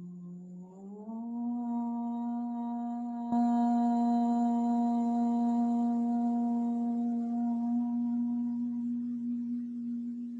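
A single voice chanting a long, sustained OM. Its pitch steps up about a second in and then holds steady, and the tone turns duller near the end. A click a few seconds in brings in a faint hiss.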